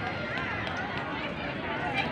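Crowd chatter: many people's voices overlapping, some of them high-pitched, over a steady background hiss.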